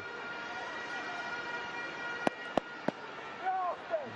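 Stadium crowd ambience under a steady high-pitched drone, with three sharp knocks in quick succession a little past halfway.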